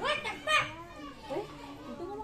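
Young children's voices chattering and calling out in a room, with one louder, high-pitched call about half a second in.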